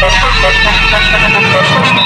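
Loud street scene: music with a deep bass that drops out just over a second in, mixed with vehicle noise and voices as a matatu passes.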